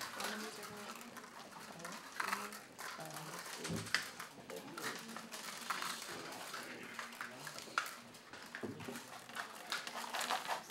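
Low background chatter of several students talking among themselves in a classroom, with a few light clicks and taps scattered through it.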